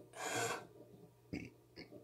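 A short rasping rustle close to the microphone lasting about half a second, then two brief fainter rustles near the end.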